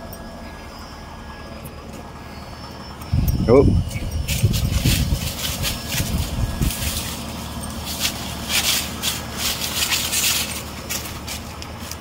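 Dry fallen leaves crunching and rustling underfoot in uneven bursts as a dog and its walker step into leaf litter, starting about four seconds in.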